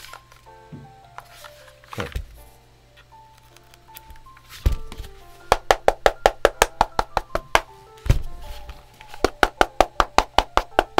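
Quick tapping on the underside of a Mistel MD600 split keyboard half's case, two runs of sharp clicks about six a second, with a few duller thumps as the half is handled. The empty bottom of the case sounds a little hollow. Soft background music with a melody plays underneath.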